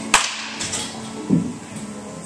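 A baseball bat hitting a ball once: a single sharp crack a fraction of a second in.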